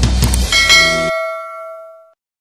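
A bell chime sound effect rings out about half a second in, its tones lingering and fading away, over the end of backing music that stops abruptly about a second in.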